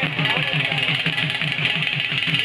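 Dhol drums beaten in a fast, steady rhythm of about eight beats a second, over the noise of a large crowd.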